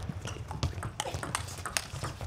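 Table tennis doubles rally: the celluloid ball clicking off rubber-faced rackets and the table in quick, uneven succession, over the players' footsteps on the court floor.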